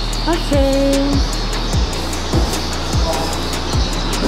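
Background music with a steady beat: a low kick drum strikes a little under twice a second over a held bass, with light high ticks on top and a short sustained melodic note about half a second in.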